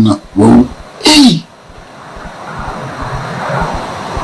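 A man's voice in two short utterances within the first second and a half, the second ending in a sharp hiss. After that comes an even background noise that slowly grows louder.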